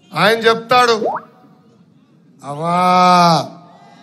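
A man's voice amplified through a public-address system, delivering a rally speech in short loud phrases, with one word drawn out and held for about a second.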